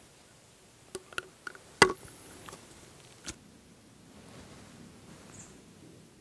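A few sharp clicks and light knocks close by, the loudest just under two seconds in, with faint rustling between them.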